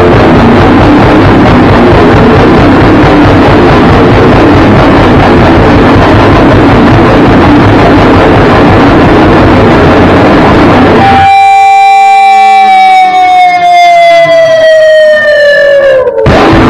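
Rock band playing loudly together on electric guitars and a drum kit. About eleven seconds in, the band stops and a single sustained electric guitar note rings on alone, sliding slowly down in pitch.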